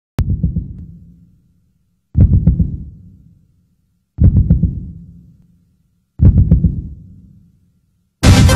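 Song intro of low, heartbeat-like thumping pulses: four of them about two seconds apart, each a quick stutter of thumps that fades out over about a second.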